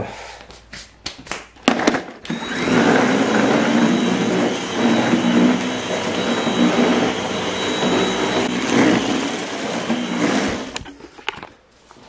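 Stick vacuum cleaner switched on about two seconds in, running steadily with a thin high whine over its rushing noise, then switched off shortly before the end. A few clicks and knocks come before it starts.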